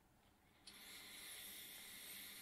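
Near silence: dead silence for about the first half second, then a faint steady hiss of recording noise from a microphone channel.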